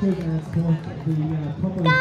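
Mostly speech: a man talking at an outdoor running-race finish. Just before the end, a loud, long, high-pitched shout starts and is held.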